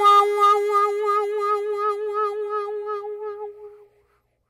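A harmonica holds the tune's long final note, warbling about four times a second. The note fades and stops just before the end.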